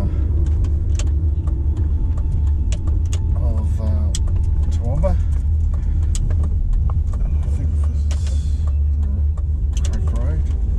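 Road noise inside a car's cabin while driving along a town street: a steady low rumble of engine and tyres, with scattered light clicks and rattles.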